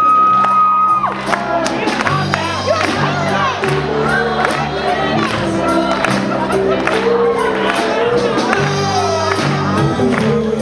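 Live rock band playing loudly on electric guitars, bass and drums, with a high note that slides up and is held for about a second at the start. Crowd noise from the audience runs underneath.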